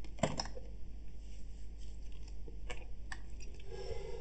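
Quiet room tone with a steady low hum and a few faint scattered clicks.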